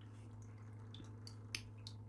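Quiet room tone: a steady low hum with a few faint, short clicks scattered through it.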